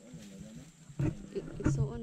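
People's voices talking indistinctly, with two low knocks about a second in and near the end, like the microphone being bumped.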